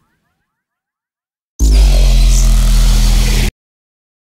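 Loud sci-fi portal sound effect: after about a second and a half of silence it comes in suddenly, a deep rumble with steady low tones under a hiss, and cuts off abruptly about two seconds later.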